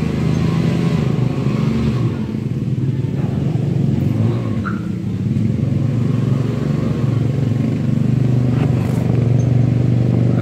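An engine running steadily, a continuous low drone.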